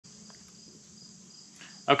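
Faint room tone with a steady high-pitched hiss, then a man's voice starts right at the end.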